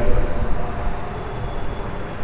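Steady background noise with no distinct source, fading somewhat over the first second.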